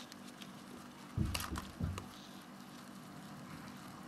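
Low room noise broken, a little over a second in, by a few soft thumps and sharp clicks: handling noise of the hand-held plastic cup of mealworms.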